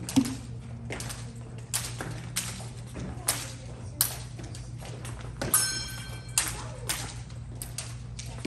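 Epee fencers' footwork and blades on the strip: a string of sharp taps and thumps, about one every second or less, over a steady low hum, with a brief held high tone a little past the middle.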